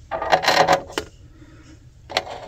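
Spark plug being turned by hand into a spark plug tester's threaded metal port: a quick cluster of metallic clinks and scrapes in the first second, then one more click about a second in.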